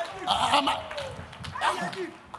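Short vocal exclamations from people in a congregation, not clear words: a loud burst about a quarter second in and another near the end.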